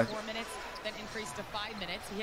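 A basketball being dribbled on a hardwood court under a television commentator's voice, from an NBA game broadcast.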